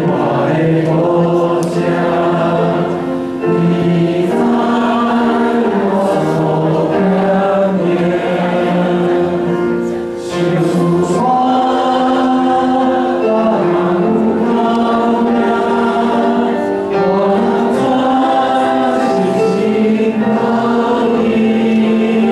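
A small mixed group of young men and women singing a hymn in Taiwanese together through handheld microphones, holding long notes and stepping between them, with brief breaths between phrases.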